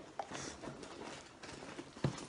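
Faint rustling and a few small knocks from items being rummaged through in a leather handbag.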